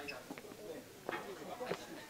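Footsteps, a couple of sharp steps about a second in and near the end, over a bird calling in the background.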